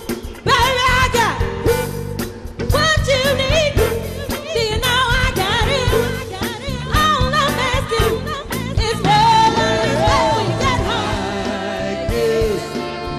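Party band music: a lead singer's voice over a full band with a steady drum beat.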